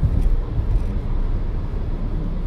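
Steady low road and tyre rumble inside the cabin of a Renault Zoe electric car on the move.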